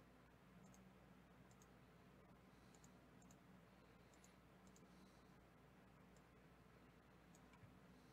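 Near silence: faint room hum with scattered faint computer mouse clicks at irregular intervals.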